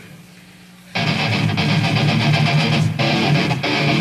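Heavy distorted electric guitar riff of a metalcore band, starting abruptly about a second in after a quieter opening, with a brief dip near the three-second mark.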